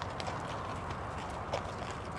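Hoofbeats of a grey Lipizzaner horse walking on arena sand: soft, irregularly spaced footfalls over a steady low background rumble.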